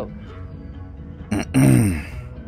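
A man loudly clears his throat: a short rasp, then a low grunt that falls in pitch for about half a second, over soft background guitar music.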